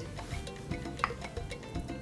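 A black kitchen spoon stirring and scraping in a pot of broth as sliced chorizo is dropped in, with a few light knocks, one sharper about halfway through. Soft background music underneath.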